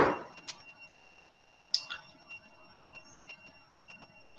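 Quiet room tone with a faint steady high-pitched whine and a few small clicks, the clearest about half a second and just under two seconds in.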